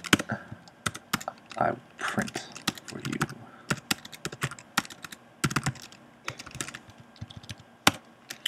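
Typing on a computer keyboard: quick, irregular runs of keystroke clicks with short pauses between them.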